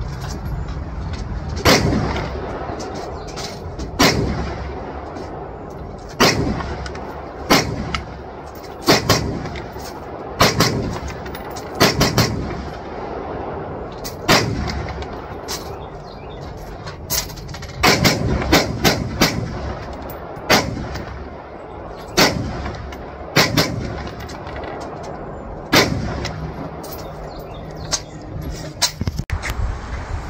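AR-15-style rifle fitted with a muzzle brake firing single shots at a slow, uneven pace, about twenty in all. Each shot is a sharp crack followed by a short echo.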